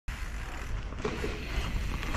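Wind buffeting and low rumble on a chin-mounted action camera as a mountain bike rolls along a dirt trail.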